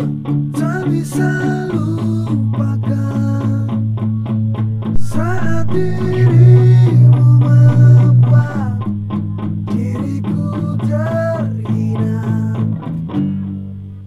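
Electric guitar, an SG-style solid-body, playing a quick melodic line of picked notes with string bends over a rock backing with long held bass notes. The low notes swell loudest in the middle, and the playing thins out near the end.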